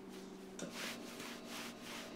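Quiet room tone: a faint steady electrical hum with soft rustling, like cloth or hands moving, coming and going every half second or so. The hum's pitch pattern shifts about half a second in.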